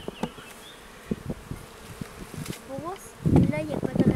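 Honeybees buzzing around an open hive, single bees flying close by with a pitch that rises and falls as they pass. Light knocks and clicks from the hive tool and wooden frames, and a short louder rumble a little past three seconds.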